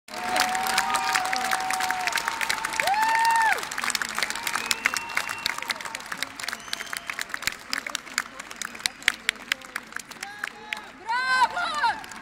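Concert hall audience applauding, with cheering shouts over the clapping in the first few seconds. The clapping then thins out, and a voice close by calls out briefly near the end.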